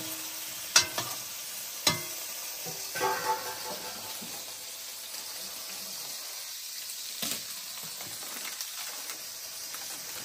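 Sliced potatoes sizzling in hot oil in an iron kadhai over a wood fire, a steady frying hiss throughout. A metal spatula knocks sharply against the pan twice in the first two seconds, with a few softer knocks and scrapes later.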